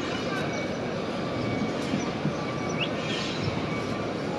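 Large crowd walking and talking close around: a steady murmur of many overlapping voices, with no single voice or sudden sound standing out.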